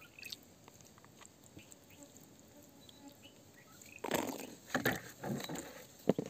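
Fingers handling a white crystal against wet, gritty rock: faint small ticks and scratches, then three short, louder bursts of scraping and rustling in the last two seconds.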